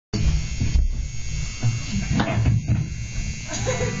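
An amplified rock band of electric guitar, electric bass and drum kit sounding in a small live club, with a few unevenly spaced drum hits over a heavy low-end rumble rather than a steady beat.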